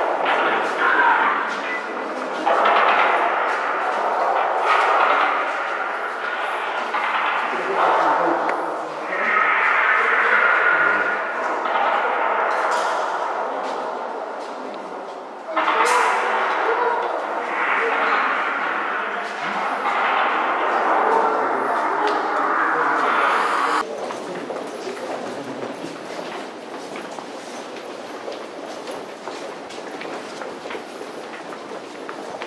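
Indistinct talking by people close by, none of it clear enough to make out, dropping suddenly to a quieter background murmur near the end.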